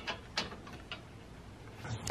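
A lug nut being threaded by hand onto a wheel stud over a stud installer tool: a few faint metallic clicks in the first second, then quiet handling.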